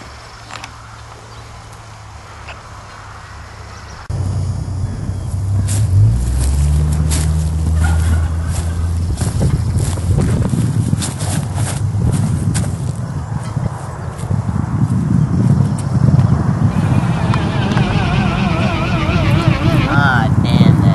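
Wind buffeting the camera microphone: a loud, gusty low rumble that starts suddenly about four seconds in, with scattered clicks. A wavering, warbling sound comes in near the end.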